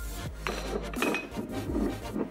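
Glass spice jars handled and shifted on a kitchen countertop: a scraping rub with two light clinks about half a second apart.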